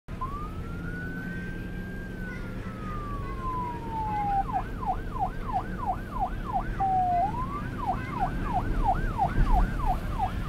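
Electronic siren on a tax police (Guardia di Finanza) patrol boat: one slow wail that rises, then falls over about four seconds, then a fast yelp of about three sweeps a second, a brief steady tone, and the yelp again. A steady low hum lies underneath.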